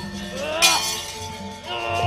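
Javanese gamelan accompanying wayang orang dancing: sustained pitched tones with short rising glides, and a sharp metallic crash of the kecrek plates about half a second in.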